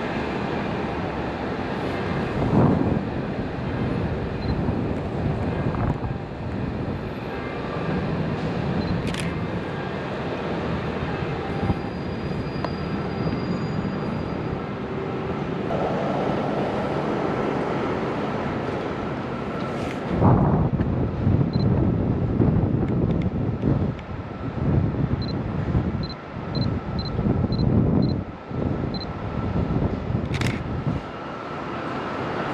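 City street ambience: steady traffic noise with vehicles passing, and a few sharp clicks. The rumble grows louder and more uneven over the last third.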